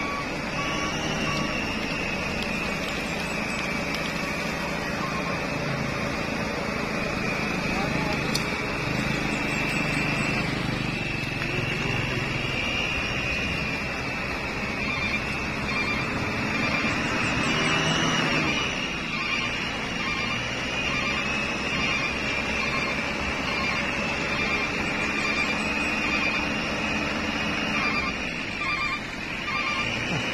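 A Mitsubishi Colt L300 pickup's engine running hard and steady as it labours through deep mud, wheels turning in the muck while people push, with voices mixed in.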